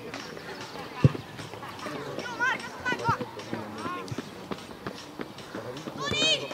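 Scattered shouts and calls of players and onlookers at an outdoor youth football match, with one sharp thump about a second in that is the loudest sound.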